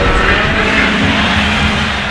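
A loud, steady rushing noise, a sound effect laid over the collage.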